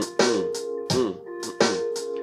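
A programmed drum-machine beat from a software drum kit playing back over a looped sample, with sharp drum hits recurring in a steady rhythm over held tones.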